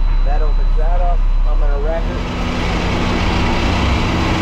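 Garbage truck's diesel engine running. About halfway through, its hydraulics start raising the tailgate, adding a steady whine and a rising hiss over the engine.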